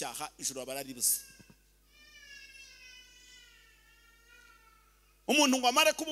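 A man preaching into a handheld microphone, speaking briefly and then pausing before resuming near the end. During the pause a faint, drawn-out wavering tone slowly falls in pitch for about three seconds.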